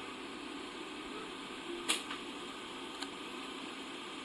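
Steady low background hiss, with one sharp click about two seconds in and a much fainter click about a second later.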